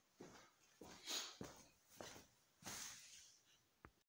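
Faint footsteps on a hardwood floor, about one every 0.6 seconds, then a short click near the end.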